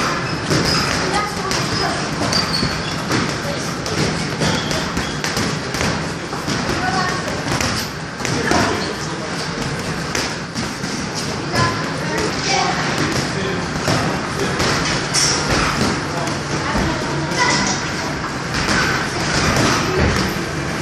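Boxing gloves thudding again and again as punches land, with voices in the background.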